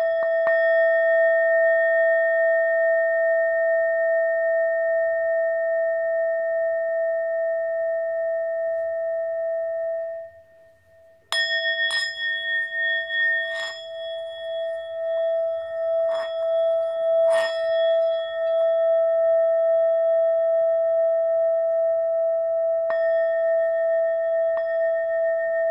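Small handmade Nepalese singing bowl, 4.5 inches across, held on the palm and struck with a wooden striker. It rings with a steady hum on its fundamental near 656 Hz (E) and a higher overtone near 1836 Hz (A#). About ten seconds in, the ring is damped to near silence; the bowl is then struck again several times over the next six seconds and rings on, with one more strike near the end.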